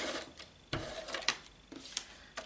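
Handheld tape-runner adhesive dispenser pressed and run across card, its mechanism rattling in short strokes with a few clicks, alongside paper handling.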